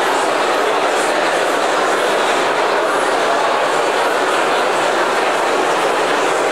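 Crowd of many people talking at once in a large hall, a steady, reverberant babble with no single voice standing out.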